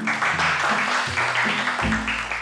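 Children applauding over background music with a steady, repeating beat.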